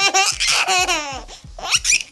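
Nine-month-old baby laughing: a string of high-pitched giggles, a brief pause, then another burst of laughter near the end.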